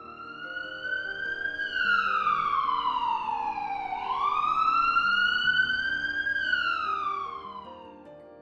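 Ambulance siren wailing in slow rising and falling sweeps, twice over, jumping suddenly back up in pitch about four seconds in. Soft background music plays underneath.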